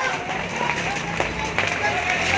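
Several people shouting and calling out over one another in a commotion, with a steady rushing noise underneath.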